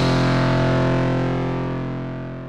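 Intro music ending on a held distorted electric guitar chord that rings out and slowly fades.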